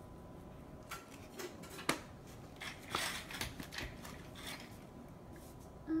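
A few light clicks and taps from small handling at a kitchen cabinet, with one sharp click about two seconds in and a quick run of taps around three seconds.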